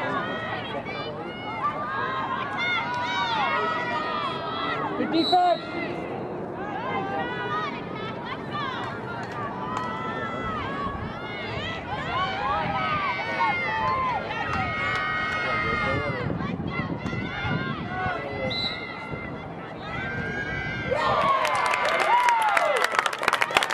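Several voices shouting and calling out over one another during play in a women's lacrosse game. Near the end, clapping and cheering break out and grow louder.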